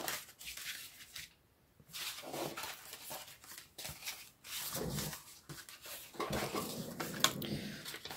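Paper greeting cards being handled and set down: intermittent soft rustling of cardstock with light taps and clicks, one sharper click near the end.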